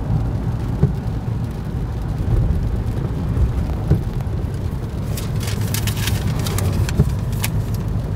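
Inside the cabin of a car driving on a wet road in heavy rain: a steady low rumble of engine and tyres, with a few light knocks and a hiss of rain and spray picking up from about five seconds in.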